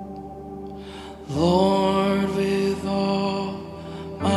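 Soft worship music: a quiet sustained chord, joined about a second in by a voice singing one long held wordless note that slides up into pitch.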